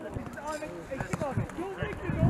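Footballers' voices calling out on an open training pitch, with a few sharp ball kicks among them.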